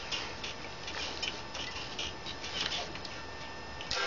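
Light, irregular clicks and taps from hands handling an electric guitar's strings before playing, over a steady background hum.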